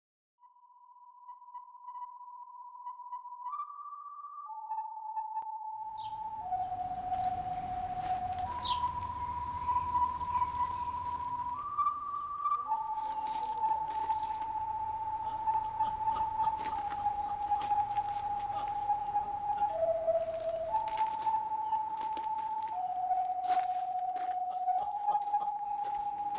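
A slow tune whistled in a single pure tone, stepping between held notes, running right through without a break. From about six seconds in, faint outdoor background joins it, with a few short high chirps and scattered clicks.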